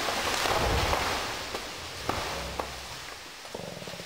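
A felled rainforest tree crashing down through the undergrowth: a rush of leaves and breaking branches with a low thump within the first second, then several sharp snaps of branches as the crash dies away.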